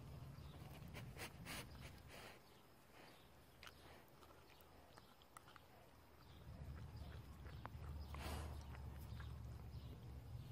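Faint, scattered clicks and scrapes of a puppy licking and nudging an ice cube on wet concrete, over a low rumble, with a brief louder rush a little after eight seconds.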